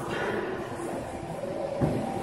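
Steady background noise of a large hall, with faint held tones and indistinct sound, and one sharp thump near the end.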